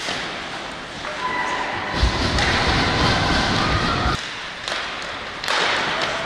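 Live ice hockey game sound in an arena: sticks, skates and puck in play around the net, with thuds over a steady crowd noise. A louder, deeper stretch in the middle stops suddenly, and the sound jumps up again near the end.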